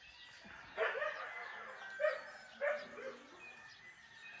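A dog barking a few times, starting about a second in, with two barks close together near the middle, over faint bird chirping.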